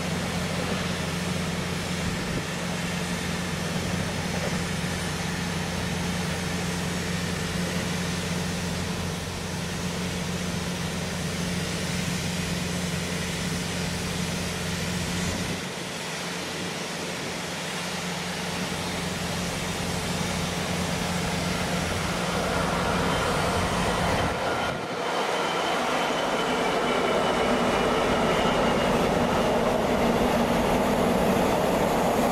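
Class 66 diesel locomotive and its container wagons passing on the rails: a steady low diesel hum and rolling rumble. It dips about halfway, then grows louder over the last several seconds as the train draws close, with a faint high-pitched wheel squeal.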